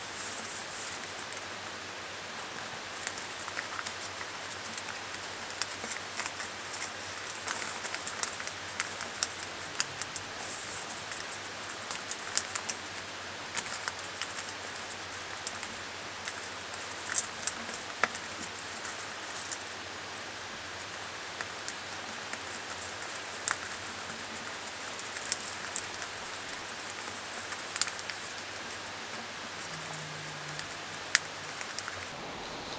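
Origami paper being folded and creased by hand: irregular soft crackles and rustles of the paper over a steady hiss.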